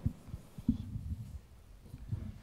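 Low, irregular thumps and bumps of a handheld microphone being handled, a few soft knocks in about two seconds.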